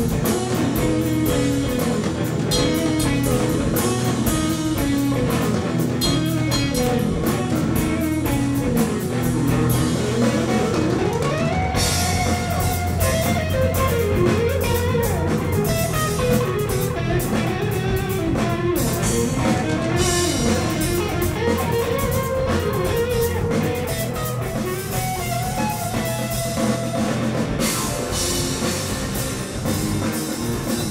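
Live rock band playing an instrumental passage: electric guitar, electric bass, drum kit and keyboards, in a soundboard-and-microphone mix. About twelve seconds in, the cymbals grow brighter and the bass settles on a steady low note.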